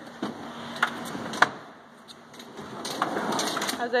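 Pull-out kitchen module of a truck camper being slid out on its slides: two sharp clicks in the first second and a half, then a rising sliding rumble as the unit comes out.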